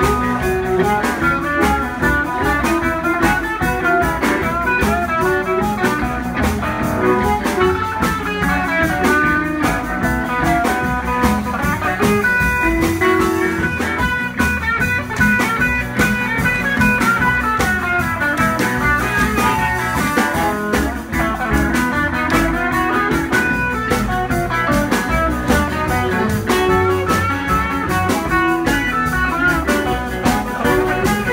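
Live blues band playing an instrumental stretch with no vocals: electric guitars over upright bass and drum kit, with a harmonica player in the lineup.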